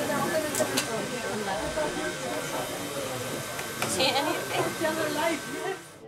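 Indistinct conversation among several people, over a steady hiss, with a few short clicks.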